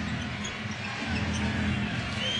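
Arena crowd noise with music over the arena's sound system, a low bass line stepping from note to note, during live basketball play.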